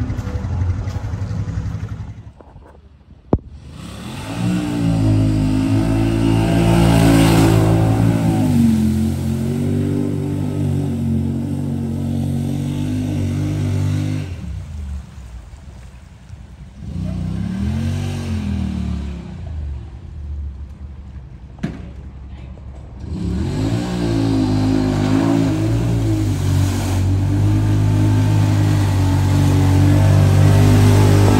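Yamaha Wolverine side-by-side's 1000 cc parallel-twin engine revving and pulling, its pitch rising and falling, in several separate stretches with short lulls between; near the end it runs steady and hard under load.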